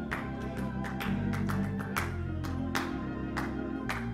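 Gospel music on an organ, with held chords and a moving bass line, over a steady beat of sharp hits.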